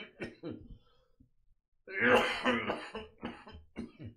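A man's coughing fit: a few short coughs, then a longer, louder bout about two seconds in, followed by several more short coughs.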